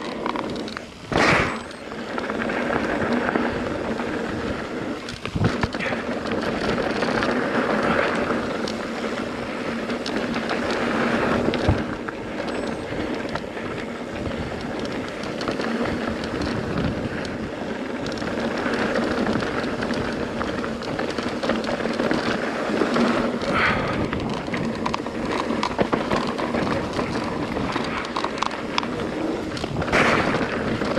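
Mountain bike rolling fast down a dirt and gravel trail, making a steady rushing noise from the tyres and bike. A few sharp knocks come from bumps, the loudest about a second in.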